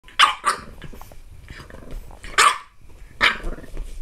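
French bulldog puppy barking in play. There are four sharp barks: two in quick succession at the start, one about halfway through and one a little over three seconds in.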